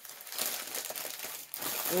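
White packing paper crinkling and rustling as hands unwrap an item from a parcel.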